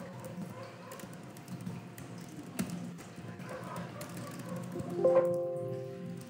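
Computer keyboard keys tapped at intervals while commands are typed. About five seconds in comes a brief ringing tone of several pitches at once, the loudest sound here.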